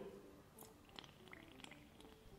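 Near silence, with a few faint small clicks and wet squelches from hydrogen being pushed out of a syringe into bubble solution to form bubbles.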